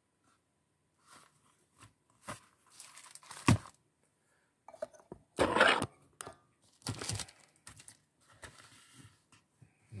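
Paper rustling and crinkling as a paperback book's pages are handled and pressed flat, in irregular bursts, with a sharp click about three and a half seconds in and louder rustles around five and a half and seven seconds.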